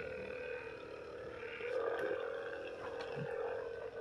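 Handheld percussion massage gun running on its lowest speed setting: a steady motor hum.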